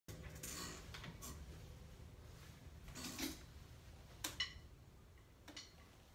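Faint handling noise: a few scattered clicks and knocks over a low steady hum.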